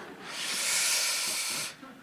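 A man's hissing exhalation, like a long "shhh", into a close handheld microphone, lasting about a second and a half and cutting off sharply.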